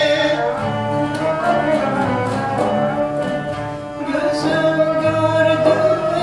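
Female soloist singing an Elazığ folk song (türkü) with a Turkish music ensemble: ney, oud, cello and a frame drum beating a steady pulse.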